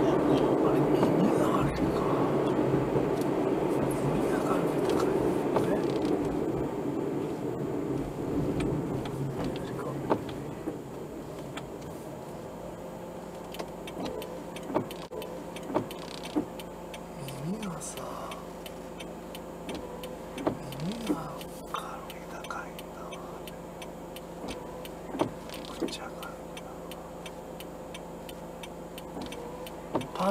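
Road and tyre noise heard inside a car, loud at first and dying away over the first ten seconds or so as the car slows to a stop. Then comes a quiet steady hum of the car standing still, with a few scattered faint clicks and knocks.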